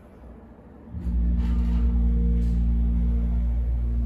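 Hydraulic elevator's pump motor switching on about a second in and running with a steady low hum as the glass car starts to rise.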